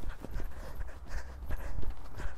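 A pony's hooves trotting on a wet, muddy sand arena: a run of soft, regular hoofbeats.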